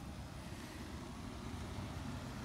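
An SUV driving slowly away down the street: a steady, low engine and tyre rumble.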